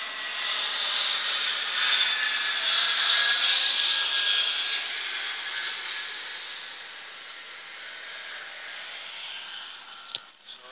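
Jet airliner flying overhead: its engine noise swells to a peak about three to four seconds in, then slowly fades as it passes.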